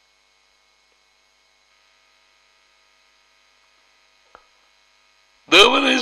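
Faint steady electrical hum in the recording, with one small click about four seconds in. A man's voice starts speaking near the end.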